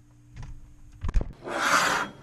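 A cardboard pizza box handled on a table. About a second in there are a couple of sharp knocks, then about half a second of scraping cardboard rubbing against the table.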